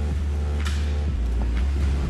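Steady low engine rumble of an idling tow truck, with faint background music over it.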